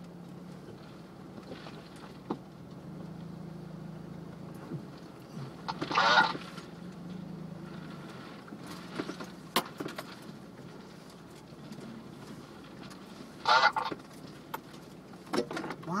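Off-road vehicle's engine running at trail-crawling speed, heard from inside the cab as a steady low drone, with occasional sharp knocks and rattles from the rough trail. Two short, wavering, nasal-sounding bursts stand out about six and thirteen seconds in.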